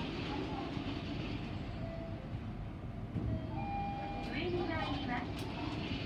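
Mitsubishi elevator car travelling upward, heard from inside the car as a steady low rumble of the moving car.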